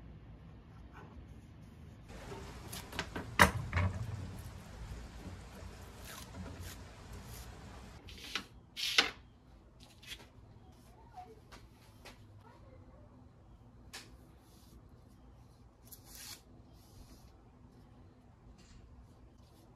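Arrow shafts and small tools handled on a wooden workbench: scattered knocks and clicks. The sharpest comes about three and a half seconds in and a double knock about nine seconds in, over a steady low hum.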